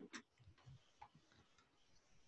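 Near silence with a few faint, isolated ticks.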